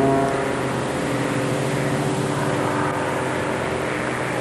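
Steady drone of a propeller warplane's engines as the aircraft comes around toward the boat.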